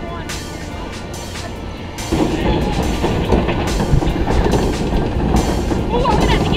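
Background music, and from about two seconds in a louder, steady mechanical clatter from the log flume ride.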